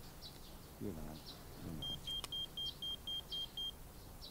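A handheld electronic device beeping: a quick run of short, even, high beeps at about four a second, starting just before halfway. Cattle low faintly about a second in.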